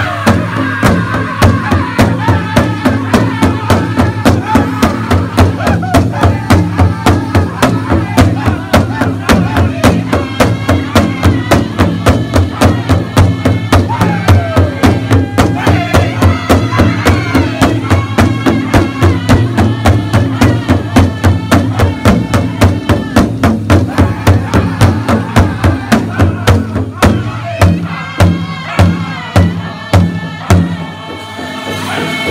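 Powwow drum group singing together over a large hide-covered powwow drum struck in unison with drumsticks in a steady, fast beat. Near the end the drum strokes thin out to fewer, spaced hits.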